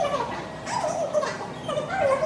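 A woman's voice amplified through a handheld microphone and PA speaker, high and sliding up and down in pitch in short phrases.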